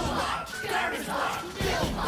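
A group of cartoon robot characters shouting and chattering together in made-up, wordless voices.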